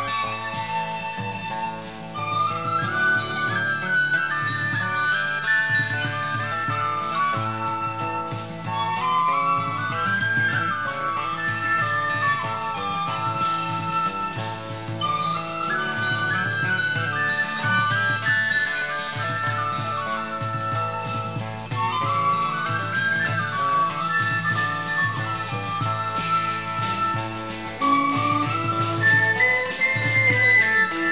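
Instrumental break in a folk ballad: a wind instrument plays the melody over a steady, pulsing accompaniment, with no singing.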